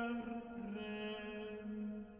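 Singing of a Reformation-era German song: a voice holds long, slow notes, moving to a new pitch twice, with the sound dropping away right at the end.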